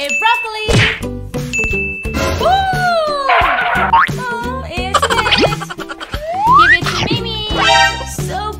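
Upbeat background music laid with cartoon sound effects: two short dings in the first two seconds, sliding boing-like tones, and a rising whistle-like glide past the middle, mixed with brief vocal exclamations.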